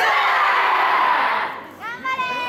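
Yosakoi dancers shouting together, a dense group shout that fades about a second and a half in, followed near the end by a single voice calling out with a rising then held pitch.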